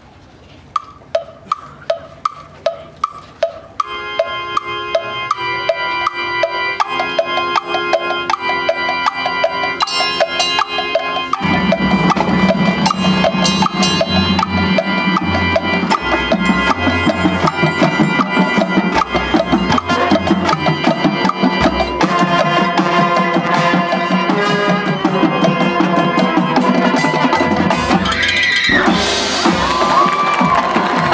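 High school marching band opening its show: a quick repeated struck percussion note from under a second in, sustained chords building in at about four seconds, then the full band with drums coming in loudly at about eleven seconds and playing on.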